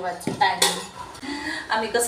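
Stainless steel cookware clinking: a couple of sharp metal knocks with a short ring in the first second, as a steel pot and lid are handled on a gas stove.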